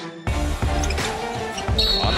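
Music, joined suddenly about a quarter second in by loud arena game sound: crowd noise and a basketball bouncing on a hardwood court.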